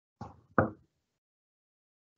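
Two short, dull knocks about a third of a second apart, the second louder.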